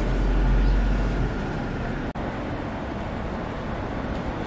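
City street ambience: steady traffic noise with a heavy low rumble in the first second or so, briefly cut off about two seconds in.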